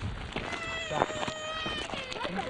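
Dog whining: one long, high-pitched whine held for over a second, level to slightly falling. It is the sound of an excited, restless dog.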